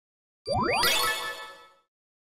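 Title sound effect: a quick upward-sweeping tone that opens into a bright, ringing chime, which fades away over about a second.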